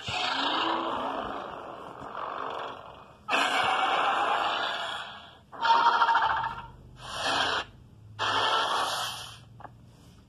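A run of five rasping monster roars, the first about three seconds long and fading, the other four shorter with brief gaps between them.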